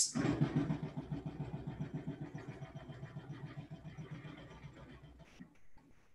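Pencil shading quickly back and forth on paper, a fast, even rhythm of strokes that slowly grows fainter.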